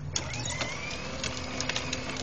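Small electric motor and gearbox of a toddler's battery-powered ride-on toy quad whirring steadily as it drives, its hard plastic wheels rolling over concrete with scattered small clicks.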